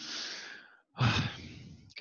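A man sighing out after laughing: a long breathy exhale, then a second, louder breath about a second in.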